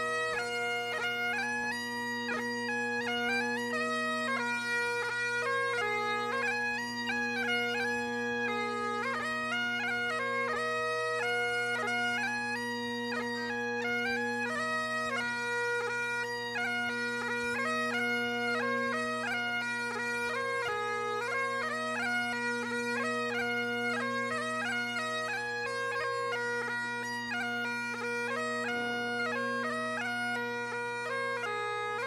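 Bagpipes playing a marching tune, the melody moving in quick steps over steady, unbroken drones.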